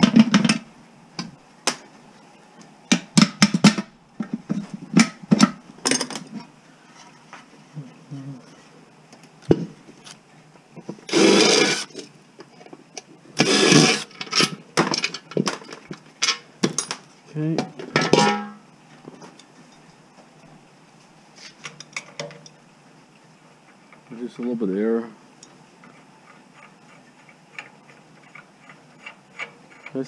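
Clanks, clicks and knocks of metal parts and hand tools as a portable gas barbecue is taken apart on a metal workbench, with two longer rasping noises about eleven and fourteen seconds in.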